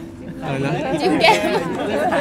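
Speech: several people talking, their voices overlapping.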